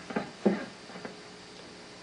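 A few short, soft sounds from an electric guitar's strings through a small amp, the first two close together near the start and one more about a second in, over a faint steady amp hum.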